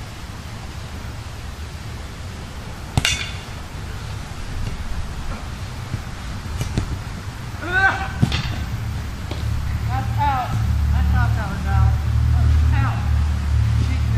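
A single sharp crack about three seconds in, then distant shouts and short cries of players running in a ball game, over a steady low rumble that swells in the second half.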